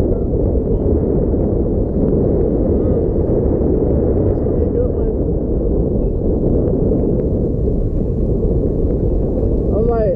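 Steady low rush of wind buffeting the camera microphone while riding an e-bike along a city street.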